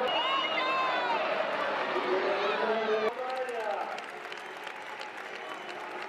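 A group of women shouting and cheering together in celebration. About three seconds in this gives way abruptly to clapping with a few scattered shouts.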